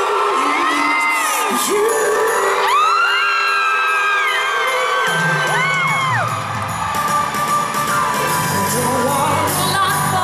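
Live pop music from a female singer on a handheld microphone over backing music, with the crowd whooping and cheering. A steady bass beat comes in about halfway.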